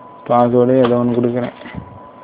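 A man's voice sounding one drawn-out, wordless phrase of about a second, with a faint steady high tone underneath.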